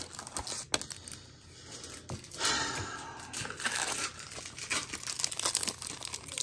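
Foil trading-card pack wrapper crinkling and tearing as it is ripped open, in repeated crackly bursts from about two seconds in, after a single sharp click near the start.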